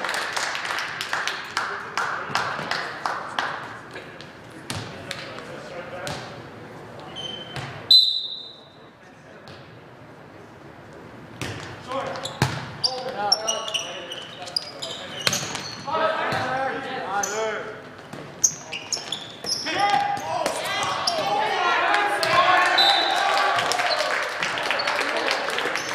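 Indoor volleyball play in a reverberant school gym: sharp ball hits and short sneaker squeaks on the hardwood floor, with players and bench calling out. A referee's whistle blows sharply about eight seconds in, the loudest sound, and a short lull follows before play and voices pick up again.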